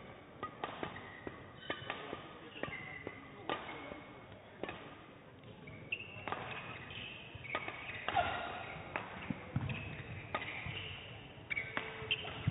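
Badminton hall sounds between rallies: sharp shuttlecock-hit clicks and short sneaker squeaks on the court floor from neighbouring courts, echoing in a large hall, with faint voices.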